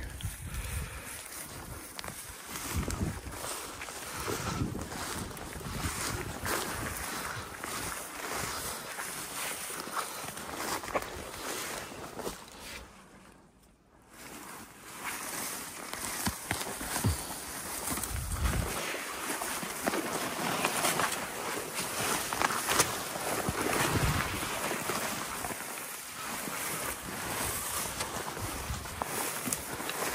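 Footsteps through dense low shrubs and young spruce: continual rustling and swishing of brush against legs and clothing, with wind on the microphone. It falls almost silent for a moment about halfway through, then picks up again.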